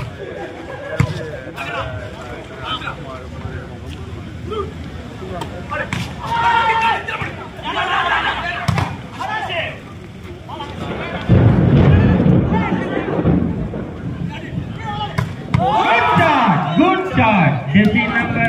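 Volleyball rally: sharp thuds of the ball being struck, with men's voices shouting. About eleven seconds in, a sudden loud burst of crowd noise breaks out, followed by more excited shouting.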